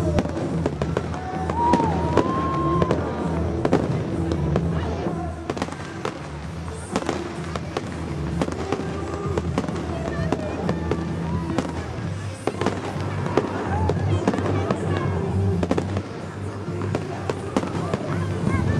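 Fireworks going off in rapid succession, many sharp bangs and crackles throughout, over loud show music.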